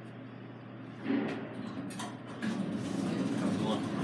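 Steady low hum of a Fujitec traction elevator car in motion, then people talking inside the car from about a second in.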